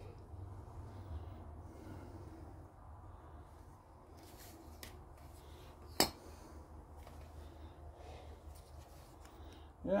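Quiet workshop with a steady low hum and faint handling noise. A single sharp click about six seconds in, then a man says "yeah" at the very end.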